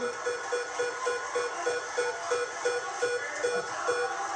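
The Price Is Right Big Wheel spinning, its pegs clicking past the pointer flapper about four times a second. The clicks space out slightly as the wheel slows.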